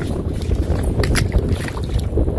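Wind buffeting the microphone, a steady low rumble, with a few short clicks or splashes near the start and about a second in.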